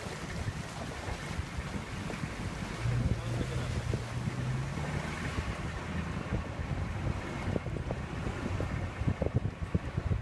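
Wind blowing across the microphone, a steady low rumble. A low hum is held from about three to six seconds in, and there are a few sharp knocks near the end.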